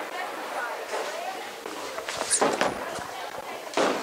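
A Storm Nova bowling ball being thrown: a few short knocks of the approach, then a cluster of heavier thuds about two and a half seconds in as the ball is released onto the wooden lane and starts rolling. Bowling-alley room noise with faint voices runs underneath.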